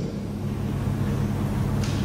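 Steady background hum and hiss of a lecture hall heard through the stage microphone, with a brief burst of hiss near the end.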